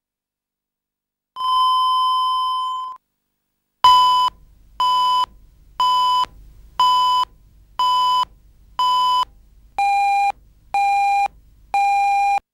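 Broadcast tape leader: a steady test tone of about a second and a half, then countdown beeps once a second. The first six beeps are at one pitch and the last three are lower, marking the final seconds before the programme starts.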